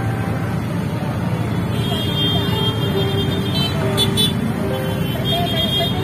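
Street traffic in a jam: car and motorbike engines running close by, with sustained horn tones and people's voices in the background.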